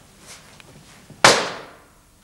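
A single sharp, loud bang on stage a little past the middle, with a short ringing tail that dies away within half a second.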